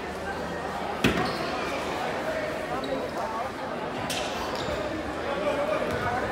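Gym crowd chattering while a basketball is dribbled on a hardwood court, with one sharp bang about a second in, echoing in the large hall.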